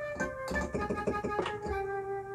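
Lead melody on a software instrument played from a MIDI keyboard: a run of quick notes, one bent slightly down with the pitch wheel, then a held lower note near the end. The bends push notes toward quarter-tones to give the Western melody an Arabic, Middle Eastern sound.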